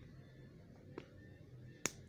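Small plastic toy kitchen pieces clicking as they are handled: a faint click about a second in and a sharp, louder click near the end.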